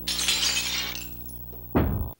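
Cartoon sound effect of glass shattering: a sharp crash of breaking glass that dies away over about a second, over background music. A heavy thud comes near the end, as the cartoon figure drops to the floor.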